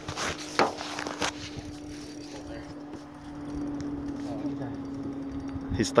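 Several sharp knocks and rustles of a phone being handled in the first second or so, over one steady, unbroken hum.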